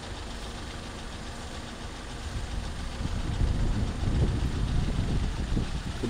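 A vehicle engine idling, low and steady, getting louder about two seconds in.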